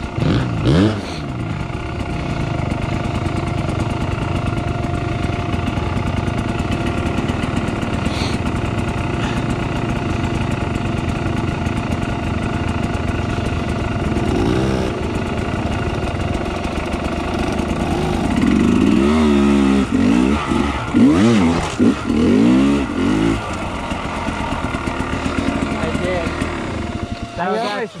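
Dirt bike engine idling steadily, then revved hard in a run of rising and falling throttle blips over a few seconds past the middle as the bike climbs a rocky ledge.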